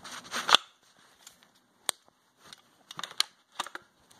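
Handling clicks of a CZ Scorpion EVO 3 S1 pistol during a one-handed safety check: a rustle and a sharp, loud click about half a second in as the safety is switched on, then a scattering of lighter clicks and taps from the gun's controls.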